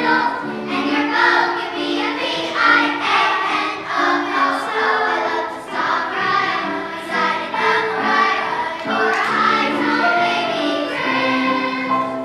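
Children's choir singing a song in unison with electronic keyboard accompaniment.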